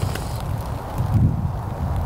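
Wind buffeting the microphone: an uneven low rumble with no clear pitch.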